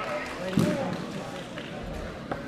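Indistinct voices in a large sports hall, with one short thump about half a second in.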